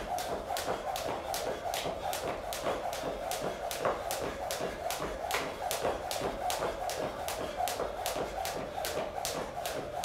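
Jump rope slapping the floor in a steady rhythm, about three light slaps a second, over a constant background hum.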